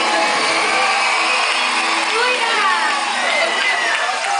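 Many voices chattering at once, higher children's voices among them, as a song's music dies away in the first couple of seconds.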